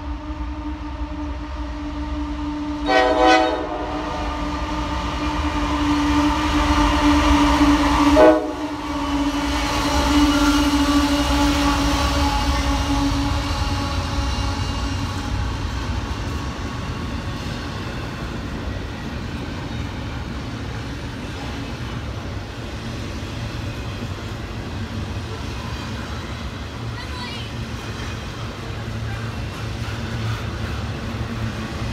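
A CSX freight train's locomotive air horn sounds one long, held chord as the train approaches and passes, with two short louder bursts about 3 and 8 seconds in; the horn stops about halfway through. Under it and after it comes the steady low rumble and rolling of a long double-stack container train's cars going by close at hand.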